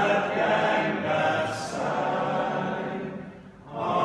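Barbershop chorus singing a cappella in close harmony, holding sustained chords. The voices fall away briefly about three and a half seconds in, then come back in together.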